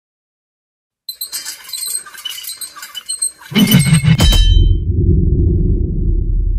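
Production-logo sound effect: light high clinks and jingles for a couple of seconds, then a loud crash about three and a half seconds in that gives way to a long, deep rumble.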